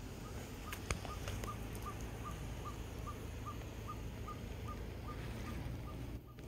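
A bird calling one short, even note over and over, about two or three times a second, with a low rumble underneath and a single sharp click about a second in.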